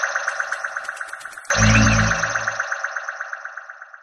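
Short music sting for a news logo ident: a fast pulsing pattern, a louder hit with deep bass about a second and a half in, then a fade-out near the end.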